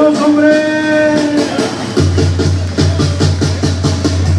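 Banda brass band playing live: a held chord from the brass, then from about two seconds in a deep tuba bass line and drums come in with a steady beat.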